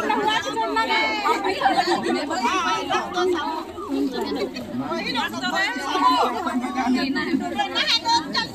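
Many people talking at once in a crowded group: overlapping, continuous chatter with no single voice standing out.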